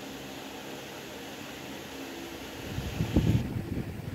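Steady mechanical hum like a running fan. About three seconds in comes a short burst of loud low rumbling and knocks.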